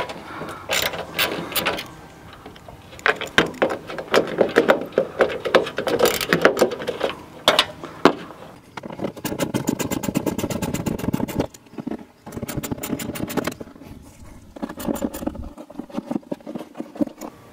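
A ratchet wrench with a 10 mm socket clicking in quick, even runs as the bolts holding the headlight assembly are loosened, with metallic knocks and handling clatter in between.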